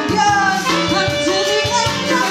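Woman singing lead into a microphone over a live Latin-jazz band, with a drum kit and hand drums keeping an even beat.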